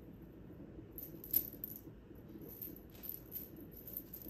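Small bell on a cat's wand toy jingling in short, irregular shakes as the toy is swung for the cat, loudest about a second and a half in.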